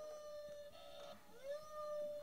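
Quiet howl-like sound in the last seconds of the song: two long tones, each sliding up in pitch and then holding, the second starting about a second and a half after the first.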